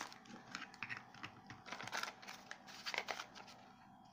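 Faint, scattered light clicks and rustles of toiletry packaging being handled on a tabletop as a blister-packed dental floss card is picked up.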